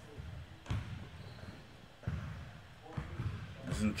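A basketball dribbled on an indoor court floor: a few separate bounces, heard from the 1v1 game video being played.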